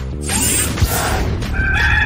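A rooster crowing once, about a second long, over background music.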